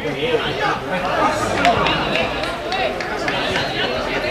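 Indistinct chatter of several voices at a football match, with no words that can be made out.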